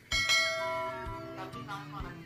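A bell struck once, ringing and slowly fading, with a few lower notes following in the second half.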